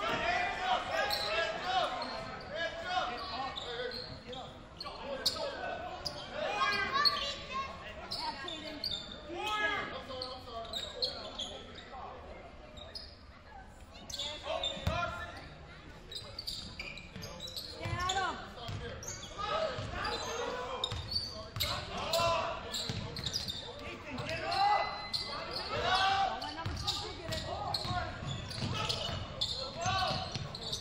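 Basketball game in a gym: a ball bouncing on the hardwood court amid voices of players and spectators calling out, echoing in the large hall.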